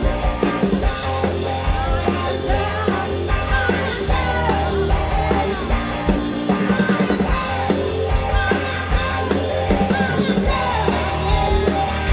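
A blues-rock band playing live: electric guitar, drum kit and violin together, with a steady drum beat under a sliding melodic line.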